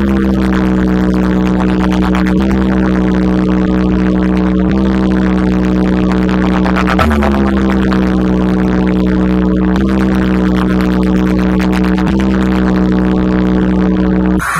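A DJ speaker stack playing a loud, steady electronic buzzing drone at a sound check. The drone swoops down in pitch at the start and again about halfway through, then holds one low note.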